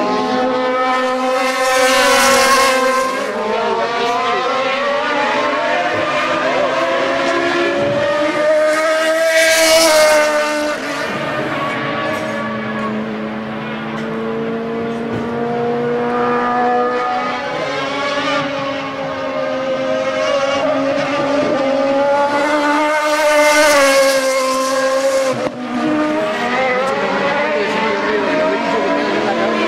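Súper TC2000 touring car engines at racing speed through a corner, one car after another, the pitch falling on braking and rising again on the throttle. The loudest passes come about 2, 9 and 23 seconds in.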